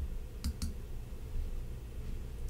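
Two short clicks in quick succession about half a second in, over a low steady hum.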